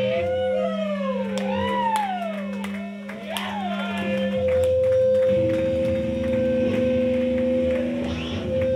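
Live band noise from amplified electric guitars: steady held feedback tones, with wailing pitch glides that sweep up and down in the first four seconds, and scattered light taps.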